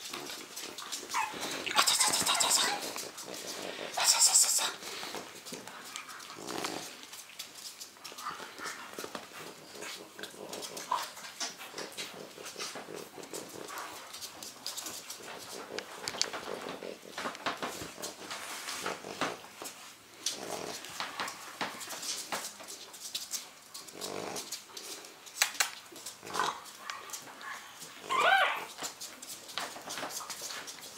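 Three-week-old French bulldog puppies playing and wrestling, making small whimpers and squeaks over a patter of paws and claws on a tiled floor. There are two louder bursts about two and four seconds in, and a rising high squeal near the end.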